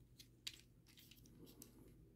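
Near silence, with a few faint clicks of the plastic action figure's parts shifting in the hands as it is transformed, the clearest about half a second in.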